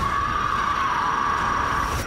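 Trailer sound design: a loud, sustained noisy drone with a steady high tone running through it, held without change.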